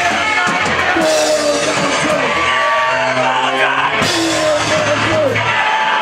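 Loud rock band playing, with drums, electric guitar and singing. Sharp, full hits land about a second in and again about three seconds later.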